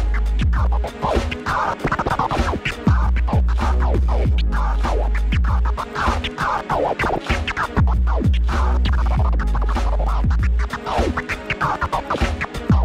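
A vinyl record scratched by hand on a turntable, many quick back-and-forth sweeps chopped by a fader, over a hip-hop beat. A heavy bass line runs under it and drops out for about two seconds at a time, three times.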